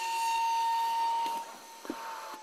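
High-speed milling spindle of a Kongsberg MultiCut head running with a steady high whine over a cutting hiss while milling a wooden board. About one and a half seconds in, the cutting noise drops away and the whine starts to fall slowly in pitch.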